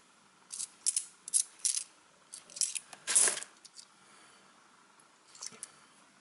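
British 20p coins clinking against one another as they are slid apart one at a time in the hand: a string of short metallic clicks over the first three seconds, the loudest just past three seconds, then a few faint clicks near the end.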